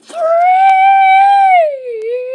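A child's voice holding one long, high-pitched note, its pitch sliding down near the end.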